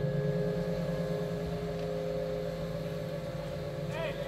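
Live band holding a low sustained drone chord over the concert sound system, steady and easing slightly in level, in a pause between spoken vocal lines.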